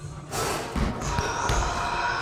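Basketballs bouncing on a hardwood gym floor: several irregular thuds in a large, echoing room.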